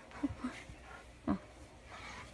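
Pit bull making a short, low vocal sound, a brief whine or grunt, about a quarter second in, amid otherwise quiet handling noise.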